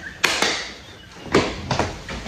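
Several women laughing hard, in breathy bursts of laughter, with a couple of sharp knocks near the start.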